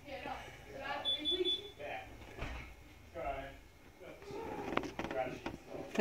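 Low, quiet voices and murmuring of people in a small room. About a second in comes a short, thin, high electronic beep lasting about half a second.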